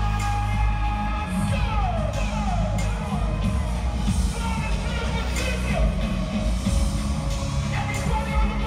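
Live concert music over an arena sound system: heavy, steady bass under held synth tones, with a run of falling pitch sweeps between about one and a half and four seconds in.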